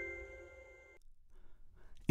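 The last notes of a chiming, glockenspiel-like logo jingle ringing out and fading, cut off about a second in, followed by near silence.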